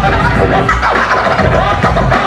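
Vinyl record being scratched by hand on a turntable over a hip-hop beat: quick back-and-forth swoops in pitch riding on a heavy, steady bass.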